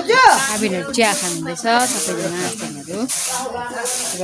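People talking in Nepali, close to the microphone, over a steady high hiss.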